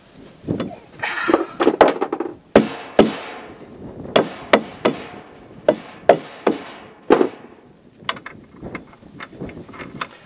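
Metal hardware clanking and knocking at irregular intervals, a dozen or so sharp knocks, a few ringing briefly. The sounds come from steel dock hardware couplers and nuts being fitted by hand to a galvanized boat motor bracket.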